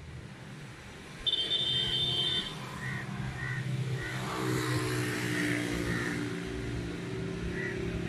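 An engine running steadily in the background, with a loud high steady tone lasting about a second, starting just after one second in, and a run of short high chirps repeating through the rest.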